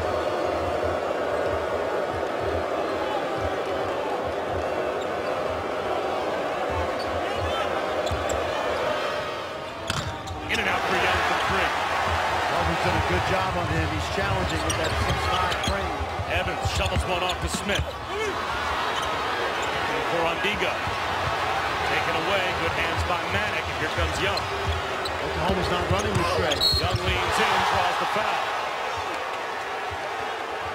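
Basketball dribbled on a hardwood court, the bounces heard over steady arena crowd noise. The crowd noise dips briefly about ten seconds in, then rises again.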